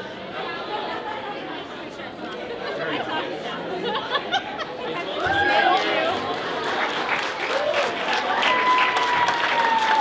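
Crowd chatter in a large hall: many voices talking at once, none clearly, growing louder about halfway through.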